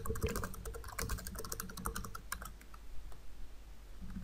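Typing on a computer keyboard: a quick run of keystrokes, densest over the first two and a half seconds, then a few scattered keys.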